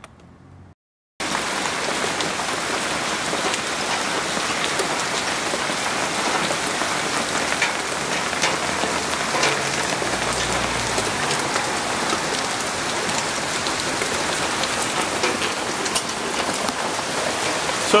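Steady rain falling on outdoor surfaces, with scattered individual drop hits. It starts suddenly about a second in, after a brief silence.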